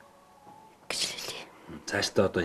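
Quiet pause, then a short whisper about a second in, followed by a voice starting to speak near the end.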